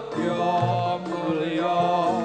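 Javanese gamelan ensemble playing: ringing metallophones and kettle gongs, with low hand-drum strokes and a chanting voice line bending over the music.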